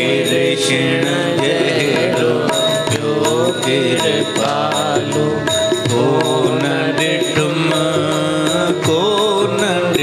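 Devotional song (bhajan): a voice singing a wavering melody over instrumental accompaniment, with steady held tones underneath and no break.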